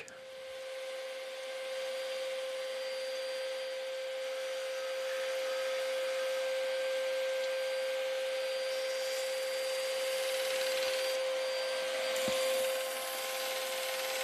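Scheppach bench disc sander running with a steady motor hum while a small piece of fruitwood is pressed against the sanding disc to grind off the excess. The sound builds over the first couple of seconds and eases off near the end.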